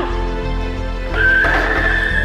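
Background music under a long, high-pitched scream that breaks out about a second in and is held steady.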